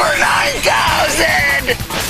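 A person yelling, the pitch wavering up and down, over loud background music.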